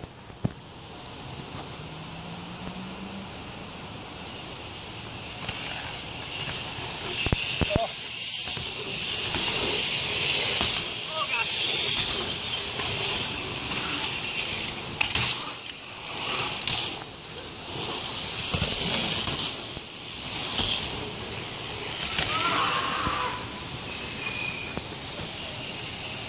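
Wind rushing over the microphone and bike tyres rolling on packed dirt while riding through a dirt-jump trail, the rush swelling and fading in waves, with a few sharp knocks.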